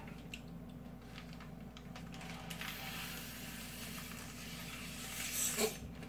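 Air being sucked out of a zipper freezer bag by mouth through a plastic drinking straw, vacuum-packing the bag: a steady airy hiss lasting several seconds that ends shortly before the bag is sealed.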